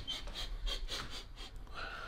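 A man sniffing the air in a quick run of short, faint sniffs, trying to place a smell.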